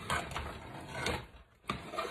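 A spoon stirring thick, cooking peanut brittle syrup full of peanuts in a metal saucepan, scraping and knocking against the pot, with a brief pause and a sharp tap about three-quarters of the way through.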